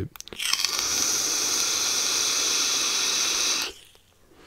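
An Eleaf Ello Pop sub-ohm tank on an iStick Mix mod is fired at 60 watts and drawn on with its airflow fully open: a steady hiss of air and vapour through the tank for about three seconds, which cuts off sharply near the end.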